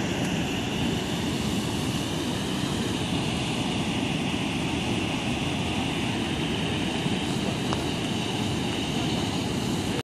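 Floodwater rushing over the stepped concrete face of an irrigation canal, a steady continuous noise.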